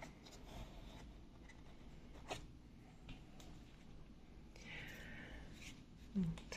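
Faint handling sounds: quiet rustling and a few soft clicks of hands working with small plastic orchid pots and moss.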